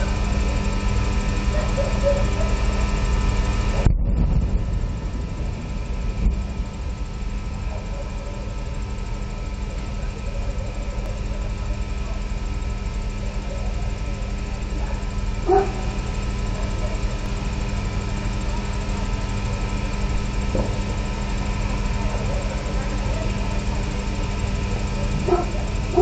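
Ambient drone: a steady low rumble under several held tones. The high hiss cuts out suddenly about four seconds in, and a few short sounds stand out, around the middle and near the end.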